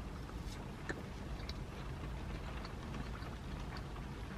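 Low, steady hum of a car cabin, with faint scattered ticks and clicks over it.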